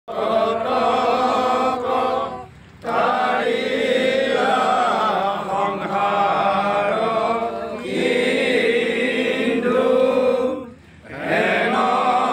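A group of mostly male voices chanting a devotional prayer together in long, held lines, with two short breaks, about two and a half seconds in and near the end.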